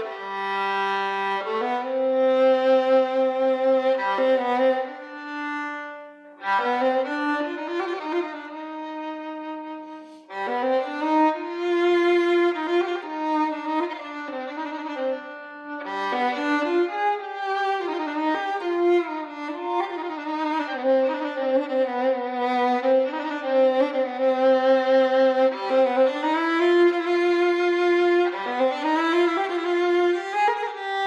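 Solo violin, bowed, playing a melody in maqam Nahawand. Notes are held in the first part, with short breaks about six and ten seconds in, then a busier, flowing passage of moving notes.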